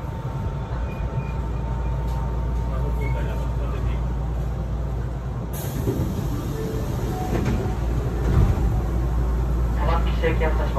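Inside a Hankyu train car standing at a station platform: the stationary carriage gives a steady low hum and rumble.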